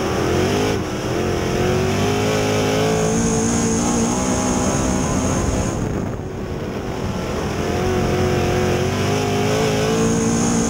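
A dirt-track race car's engine heard from inside the cockpit, running hard at racing speed. Its pitch drops briefly about a second in and again around six seconds as the car goes through the turns, then climbs back.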